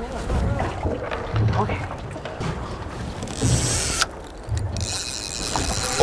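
Spinning reel being wound in by hand, with low knocks of the boat. Near the end a high, steady whir begins: line running off the reel's drag as a hooked fish pulls.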